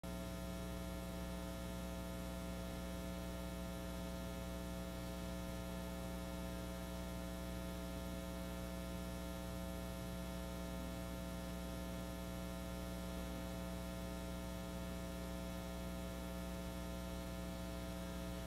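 Steady electrical mains hum: a low buzz with a ladder of higher tones above it, unchanging in pitch and level throughout, with no other sound standing out.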